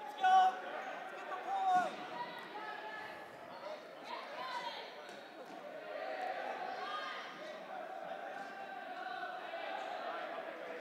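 Dodgeballs bouncing and smacking on a gym floor now and then, under players' distant calls and shouts.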